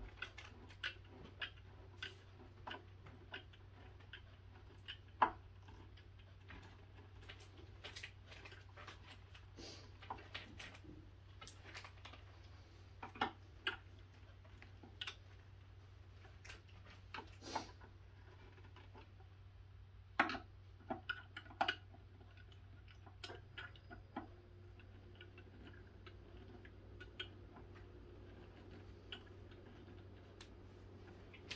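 Scattered light clicks and small knocks, irregular and a few seconds apart, from hands and a hand screwdriver working on a particleboard cube organizer, with a faint steady low hum underneath.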